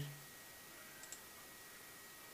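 Two faint computer mouse clicks close together about a second in, clicking the skip button on a web page.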